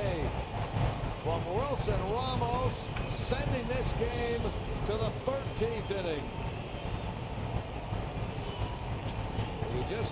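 Baseball broadcast sound: a steady ballpark crowd murmur, with a TV play-by-play commentator talking over it for the first several seconds.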